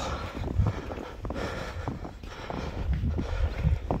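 Outdoor ambience dominated by a low rumble of wind on the microphone, with a few faint clicks and crunches scattered through it.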